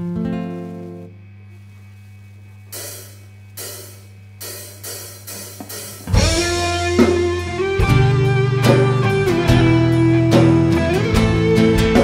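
Song opening on a live rock band: a nylon-string acoustic guitar plays a short arpeggiated chord, then a few cymbal strokes count in over a steady amplifier hum. About six seconds in the full band enters loudly, with acoustic and electric guitars, bass and drum kit.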